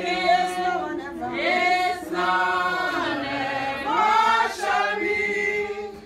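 Church congregation singing a slow chant without instruments, long held notes in a few short phrases.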